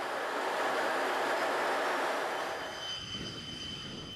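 X-47B drone's jet engine: a steady rushing roar that fades from about two and a half seconds in, leaving a faint, steady high whine near the end.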